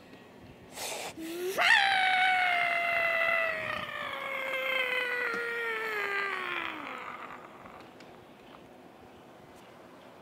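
A child's long scream, about five seconds, that starts suddenly and slides steadily down in pitch before trailing off. A short breath comes just before it.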